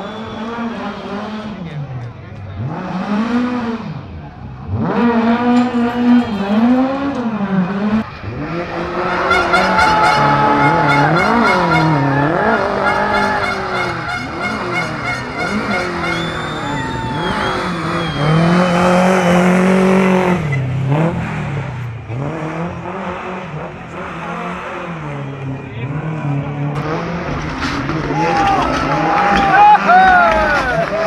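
Rally cars driven hard through a tight asphalt corner, one after another: engines revving up and dropping repeatedly through gear changes and braking, with tyre squeal.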